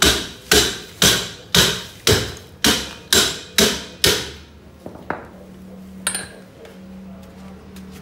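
Hammer striking metal in a steady rhythm, about two blows a second, each with a brief ring, as a part of a Peugeot 206 rear torsion-bar axle is tapped into place on the right side. The blows stop about four seconds in, followed by a couple of fainter knocks.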